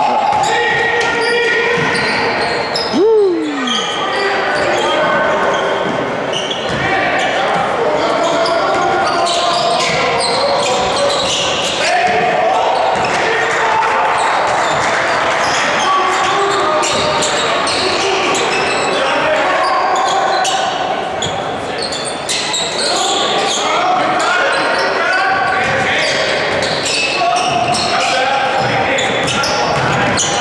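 Basketball game in a large gym: a ball bouncing on the hardwood floor under the constant chatter of spectators and players, echoing in the hall. A loud falling call sounds about three seconds in.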